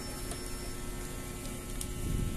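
Steady electrical hum with low background noise; no distinct action sound stands out.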